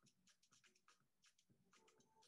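Near silence, with faint irregular clicks a few times a second.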